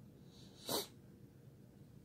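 A single short, sharp breath through the nose, about three-quarters of a second in, against a quiet room.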